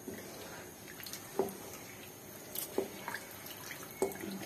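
Wooden spatula stirring thin chickpea curry in a nonstick pan: soft wet sloshing with a few short, faint plops, one about a second and a half in and several more near the end.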